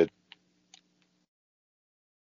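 Two faint short clicks about half a second apart after a spoken word ends, then silence.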